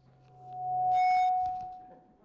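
Sound-system feedback through the lecture-hall PA: a single pitched ring that swells to a loud peak about a second in, briefly adding higher overtones, and then dies away. It is the sign of the microphone's amplification being set too high.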